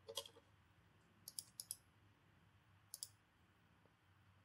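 Faint, sparse clicks at a computer: a few right at the start, two quick pairs a little over a second in, and one more pair about three seconds in, over near-silent room tone.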